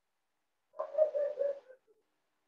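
A brief animal call, about a second long, held on one steady pitch and starting just under a second in.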